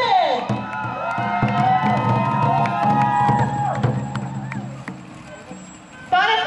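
A group of voices singing and calling out together in long held notes, led in by a falling whoop. The voices die away over the last two seconds.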